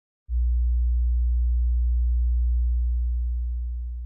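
A deep, steady electronic bass tone starts about a quarter second in, holds, then fades away over the last second and a half.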